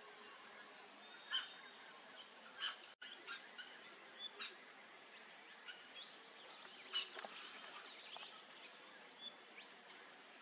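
Forest birds chirping: many short, arched whistled notes from several birds, thickest in the second half, over a faint steady background hiss. Two sharp ticks come in the first three seconds.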